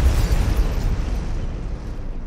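Cinematic explosion sound effect: a deep boom whose rumble slowly fades away.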